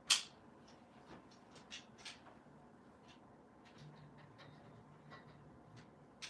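A sharp click near the start, then scattered light clicks and rustling as a satin backdrop is unclipped and pulled down from a backdrop stand's crossbar.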